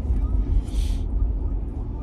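Steady low road and engine rumble inside a truck cab while driving, with a brief hiss about half a second in.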